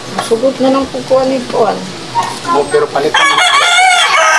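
A rooster crowing once, a loud drawn-out call that begins about three seconds in.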